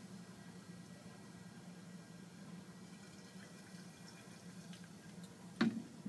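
Faint trickle of hydrochloric acid being poured into a flask of potassium permanganate, over a steady low hum from the fume hood, with a few faint clicks in the second half.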